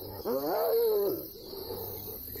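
Spotted hyenas fighting, several attacking one: a single drawn-out hyena call, about a second long near the start, that rises and then falls in pitch.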